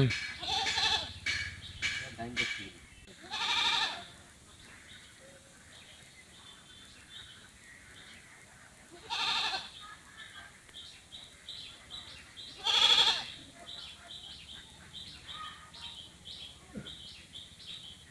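Three loud, drawn-out animal calls, each under a second, several seconds apart, with brief voices at the start. A faint high chirp repeats about twice a second in between.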